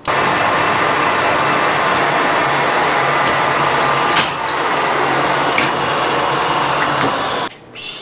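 Metal lathe running and cutting, turning metal off the crankshaft's flywheel to bring it into balance. It runs as a steady noise with faint steady tones and a couple of sharp clicks, then stops abruptly near the end.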